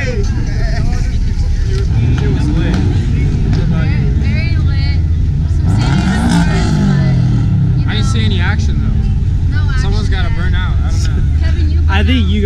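A car engine running at low revs under scattered voices. Its note rises and falls back once, about six seconds in, like a rev or a car going by.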